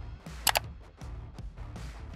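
A computer mouse click, a quick double tick of press and release, about half a second in, over quiet background music.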